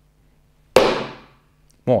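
A single sharp strike of a Zen master's wooden staff, about three quarters of a second in, with a short ringing decay.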